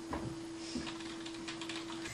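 Faint scattered clicks over a steady hum.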